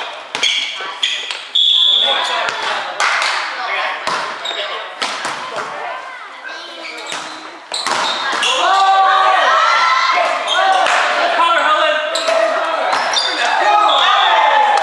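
Volleyball rally in a gym: a ball is struck and bounces, each sharp impact echoing in the large hall, with a brief high squeak about a second and a half in. Players shout and call from about eight seconds on, and the sound gets louder there.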